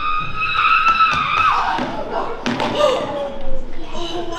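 A performer's long, high-pitched yell, held steady for about two seconds, then a thump about two and a half seconds in as a body lands on the wooden stage, followed by a lower voice sliding down in pitch.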